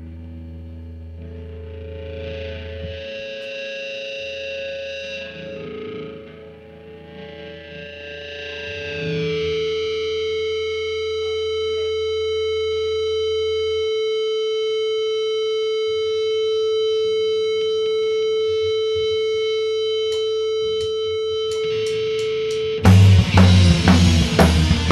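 Live band on stage: electric guitars with effects playing held, ringing chords that swell up and sustain as a song intro. About a second before the end the drums and full band come in suddenly and loudly.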